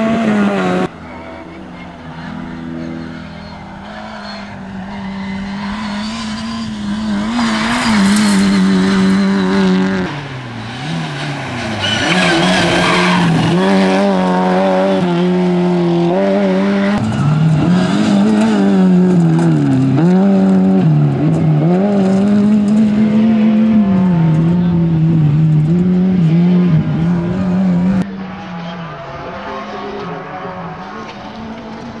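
Škoda Felicia rally car's four-cylinder engine at high revs, rising and dropping again and again through gear changes and lifts off the throttle as the car is driven hard. About midway there is a louder stretch of tyre and loose-gravel noise as it slides through a corner. The sound jumps abruptly about a second in and again near the end.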